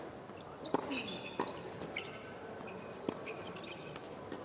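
Tennis rally on a hard court: several sharp racquet-on-ball hits, a few tenths of a second to about a second and a half apart, with sneaker squeaks on the court surface between them.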